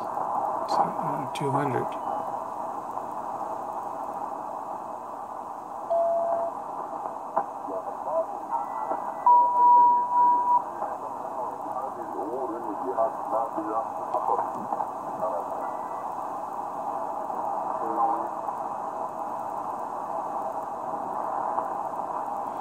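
Ham radio receiver on 40-metre lower sideband being tuned up the band: steady band-noise hiss through the sideband filter, a short whistle about six seconds in and a louder steady whistle lasting over a second near the middle as it passes carriers, and faint garbled snatches of sideband voices later on. A voice is heard briefly at the start.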